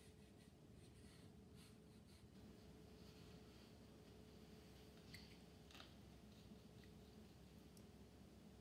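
Near silence: faint room tone with a thin steady hum, and light strokes of a watercolour brush on paper, with a few faint ticks a little after halfway.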